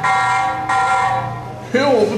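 Motion-triggered alarm on a stairwell security camera sounding one steady electronic buzzing tone, which fades out about three-quarters of the way through. A voice starts just as it ends.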